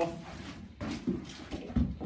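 Handling noise of an electrician moving a test-lead plug to the next socket outlet: rustling with a few soft knocks, the last near the end as the plug is pushed into the socket.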